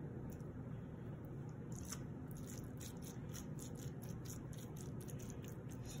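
Faint, scattered clicks and scrapes of metal kitchen tongs spreading shredded chicken over a sauced flatbread, the clicks growing more frequent from about two seconds in, over a steady low room hum.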